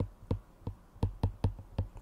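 A stylus tip tapping and clicking on a tablet's glass screen while handwriting a word: about a dozen short, irregular clicks, coming faster toward the end.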